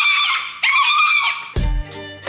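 A small pig squealing: two long high squeals, one after the other. Upbeat music with a bass beat starts about one and a half seconds in.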